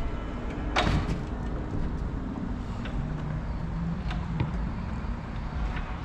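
XSTO ZW7170G electric stair-climbing dolly's motor running with a low, steady hum as the loaded dolly works on the stairs, with one sharp knock about a second in.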